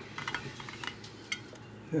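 A handful of light clicks and ticks as a flexible silicone mold is peeled up off a plaster casting, most of them in the first half-second and a couple more later.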